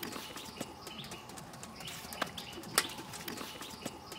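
A kitchen knife cutting through chunks of hand-held wax gourd, the cubes dropping onto a plate in several sharp clicks, the loudest near the end. Birds chirp repeatedly in the background.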